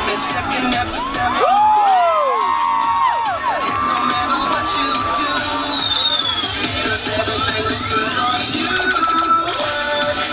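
Cheerleading routine music mix with a steady beat, laced with swooping pitch-sweep effects and a long rising sweep in the second half, with some cheering from a crowd.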